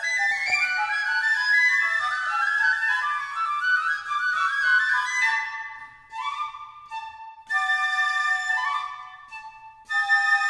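Three concert flutes playing together in overlapping, interweaving lines of short held notes. About halfway through, the texture thins into shorter phrases separated by brief pauses.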